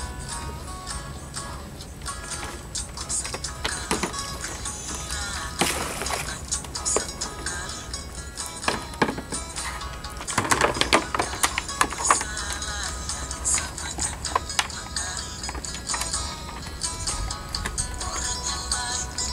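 Background music with a steady low beat runs throughout, with scattered knocks and clicks over it, the busiest stretch about ten to twelve seconds in.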